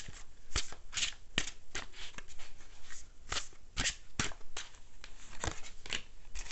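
Tarot cards being shuffled and handled: a run of quick, irregular card snaps and flicks as a card is drawn from the deck and laid down on the table spread.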